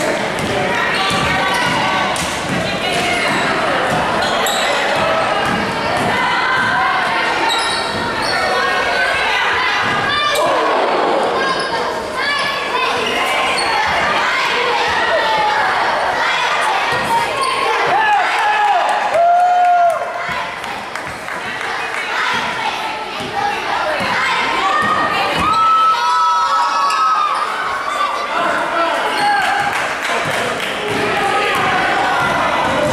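Basketball dribbling and bouncing on a hardwood gym floor during play, with the knocks of the ball and the players' running steps. A few short, high squeaks of sneakers on the floor come about two-thirds of the way through and again near the end, all echoing in a large gym.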